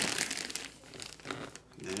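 Clear plastic bag crinkling and rustling as the bagged jersey is handled and propped up. The crinkling is strongest in the first second and thins out after that.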